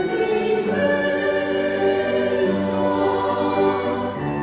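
A small mixed church choir singing in held notes.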